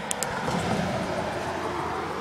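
Hard plastic wheels of a push trike rolling along a concrete sidewalk, a steady rolling rumble, with two short clicks just after the start.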